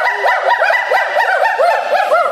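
Hoolock gibbons calling: fast, overlapping series of whooping notes, each rising then falling in pitch, several a second.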